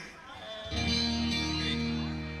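Opening chord of an acoustic song on keyboard and acoustic guitar, coming in about two-thirds of a second in and held steadily.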